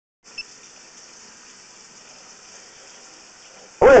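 Steady faint hiss, without tone or rhythm, beginning about a quarter second in after a short silence.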